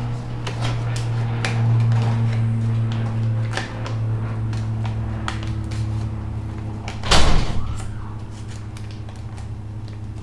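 A sheet of paper rustling and crinkling as it is folded in the middle and creased by hand, with scattered light taps and one louder rustle about seven seconds in, over a steady low hum.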